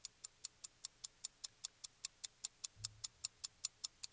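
A clock ticking quickly and evenly, about five ticks a second, keeping time for a running timer.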